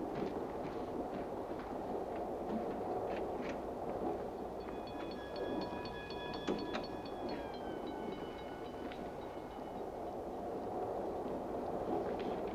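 Passenger railroad car running: a steady rumble with occasional clicks and knocks. Midway a high ringing with a steady pulse sounds for several seconds, dropping slightly in pitch partway through.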